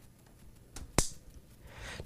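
A single sharp click about a second in, as a plastic quick-disconnect coupling on a coolant hose snaps into its mating fitting on a liquid-cooling water block.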